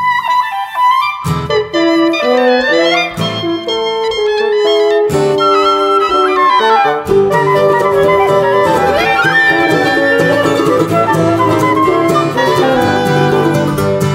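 Instrumental break of an acoustic folk song: a clarinet-led woodwind duet plays the melody alone, and about a second in the band joins with acoustic guitar, mandolin and low accompaniment under it.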